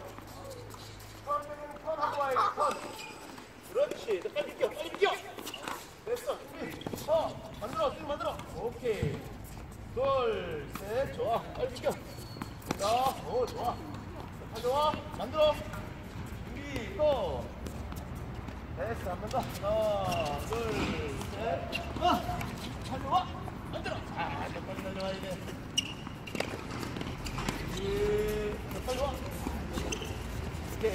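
Tennis balls struck by rackets and bouncing on a hard court during a feeding drill, short sharp hits scattered through, under near-continuous shouted calls from the coach and players.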